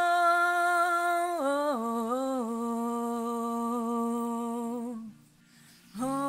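A voice humming a slow wordless tune: one long held note that steps down to a lower note about a second and a half in, with a small turn, then holds that lower note until it stops about five seconds in.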